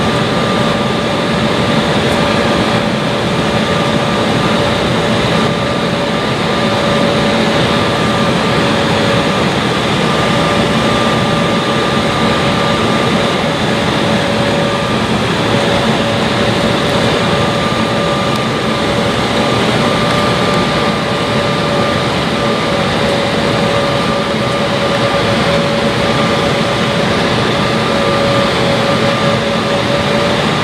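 Cabin noise of an Embraer 170 airliner on final approach with flaps extended: a steady rush of airflow and the hum of its GE CF34 turbofan engines, with a few steady whining tones held throughout.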